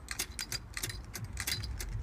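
Early-1900s clockwork trapeze toy running, giving a quick metallic clicking and clinking of about five clicks a second.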